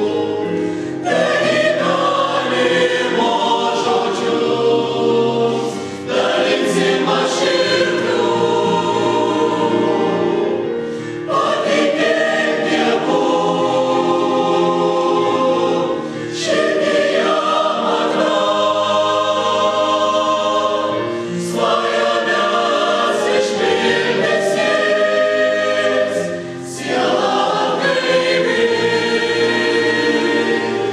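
Mixed choir of women's and men's voices singing a Christian hymn in sustained chords. The singing comes in phrases of about five seconds, each ending with a brief dip as the singers breathe.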